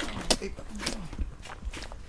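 A low, murmured voice speaking briefly, with scattered taps and footsteps. No engine is running.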